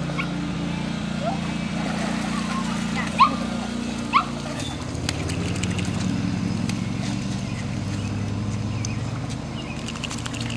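A dog giving a few short, high, rising whines in the first half, over a steady low hum that drops slightly in pitch about halfway through.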